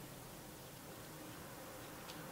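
A faint low buzz over quiet room hiss.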